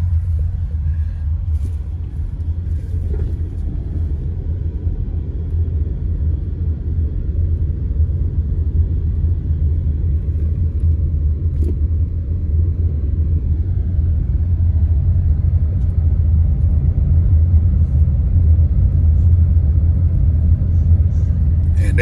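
Steady low rumble of a car driving slowly, heard from inside the cabin: engine and tyres on a rough road, growing a little louder in the second half.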